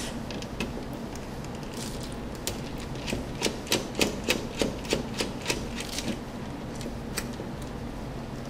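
Irregular small clicks and ticks of a small Phillips screwdriver turning out the screws that hold a laptop's Wi-Fi card to the motherboard, coming thickest in the middle of the stretch.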